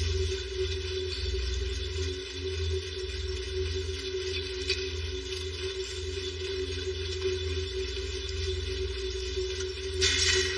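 Steady ambient drone: a constant hum with a low rumble beneath it and a faint hiss above.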